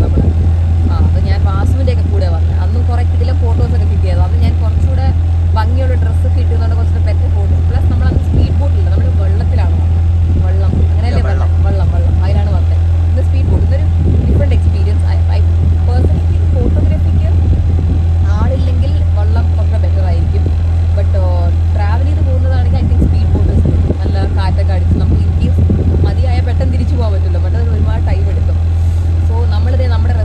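A speedboat's engine runs under way with a loud, steady low drone, and a woman talks over it throughout.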